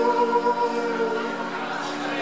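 Live blues-rock band with electric guitars: a sustained held note rings and fades away over the first second and a half, then the band carries on more quietly.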